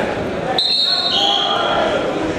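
Referee's whistle: a sudden, steady, high blast about half a second in, overlapped by a second, slightly lower whistle blast that runs on for most of a second. Under them is the chatter of a crowd in a gymnasium.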